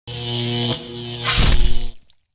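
Production-logo sound effect: steady synthesized tones that change about three-quarters of a second in, then a loud swelling rush of noise that cuts off suddenly near the end.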